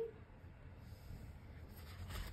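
Faint, soft brushing of a damp watercolour brush stroked across hot-pressed cotton paper.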